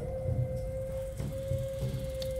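Cartoon soundtrack: one long held note that slides down slightly as it begins and then stays steady, over a low rumble.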